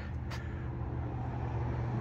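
A vehicle engine idling, a steady low hum under faint outdoor background noise.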